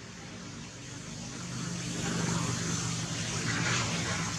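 A motor vehicle's engine hum and road noise, growing steadily louder over the second half.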